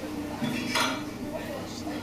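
A dish set down on a wooden table with one sharp clink about three-quarters of a second in, over the chatter of a busy eatery.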